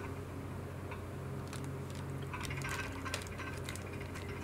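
Crinkling of a foil and paper candy wrapper being handled: a scatter of small crackles and clicks from about a second and a half in, thickest near the end, over a steady low hum.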